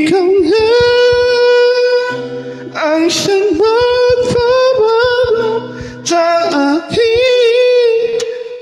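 A high singing voice holding long, sustained notes in a song, in phrases with brief breaks, over faint accompaniment.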